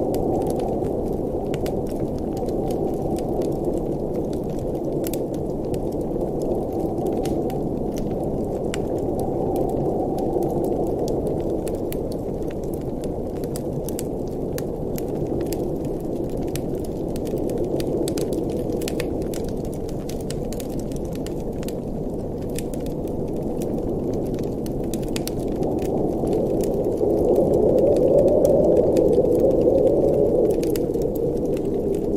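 Wood fire crackling in a fireplace, with scattered sharp pops, over a steady low rush of blizzard wind that swells near the end.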